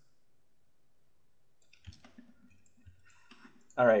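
Faint computer mouse clicks in a quiet room: two distinct clicks about a second apart, then a few softer ones just before a man starts speaking.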